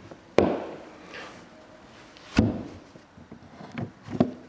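Two carpeted deck storage-compartment lids on an aluminum bass boat being shut, two thumps about two seconds apart, with light handling ticks near the end.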